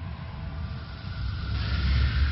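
Deep rumble under a rushing hiss that swells loud in the last half second.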